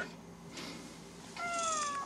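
Moflin AI pet robot giving one short, high, squeaky call that falls slightly in pitch, about a second and a half in.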